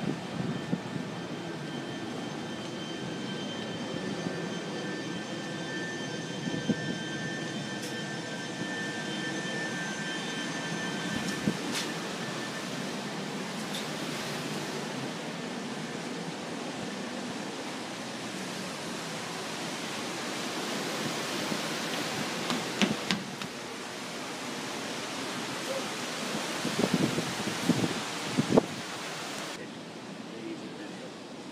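Steady rushing wind and ship running noise on the open deck of a steamship under way, with a faint high whine in the first third. A few sharp knocks come near the end.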